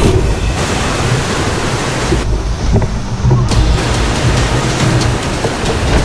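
Whitewater rapids rushing loudly around a canoe, a dense churning-water noise whose high hiss drops away for a second or so about two seconds in. Music plays underneath.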